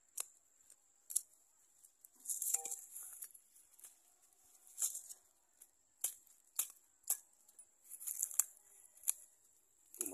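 Hand digging in dry soil with a sickle: a dozen or so short, sharp scrapes and chops of the blade into the dirt, with rustling, tearing sounds as roots and clods are pulled out by hand, longest a couple of seconds in and again near the end.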